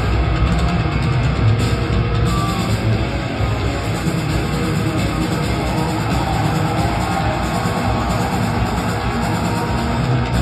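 Power metal band playing live through a venue PA, heard from the crowd: distorted electric guitars and drums, loud and dense throughout.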